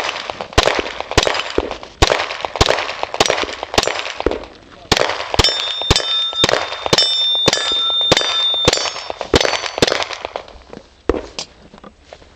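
A fast string of gunshots, about two a second, fired at steel plate targets, which ring with a high tone between shots in the middle of the string. The shooting stops about ten seconds in.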